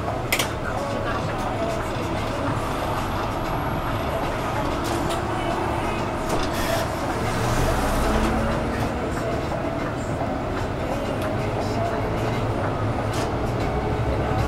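Inside a moving city bus: steady engine and road rumble with occasional rattles and clicks, a sharp click about half a second in, and the low rumble briefly swelling around the middle.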